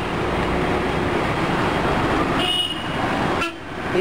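Road traffic noise: a steady rushing noise, with a short vehicle horn toot about two and a half seconds in.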